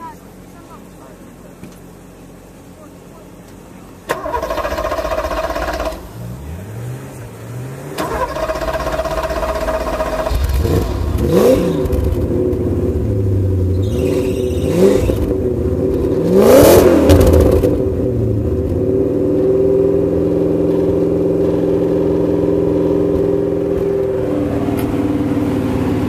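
Porsche 928 S V8 with a non-standard exhaust being started: the starter cranks in two tries, from about four and about eight seconds in, and the engine catches after about ten seconds. It is revved several times, then settles to a steady idle for the last several seconds.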